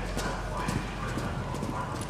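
Several people's footsteps on concrete, irregular hard clicks of boots as they move down a stairwell, over a steady low rumble.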